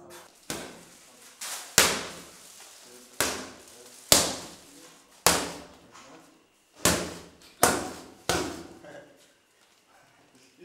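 Boxing gloves striking a trainer's focus mitts during a pad warm-up: nine sharp smacks at an uneven pace, some landing in quick pairs, each echoing briefly in the room.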